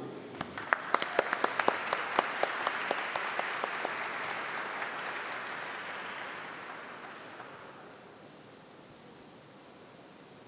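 Audience applauding, with a few sharp, close claps standing out over the rest at first. The applause dies away over about eight seconds.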